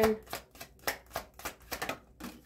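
A deck of tarot cards being shuffled by hand, giving a quick, irregular run of sharp card snaps and flicks, several a second.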